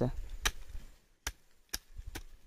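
Hand hoe blade chopping into dry, stony soil: three sharp separate strikes, about half a second to a second apart.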